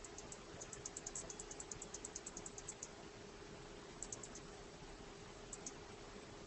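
Faint typing on a computer keyboard: a quick run of keystrokes for about two seconds, then two short bursts of a few keys each, over a steady faint hum.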